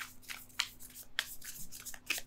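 Tarot cards being shuffled by hand: quick, irregular rustles and light slaps as the cards slide against each other.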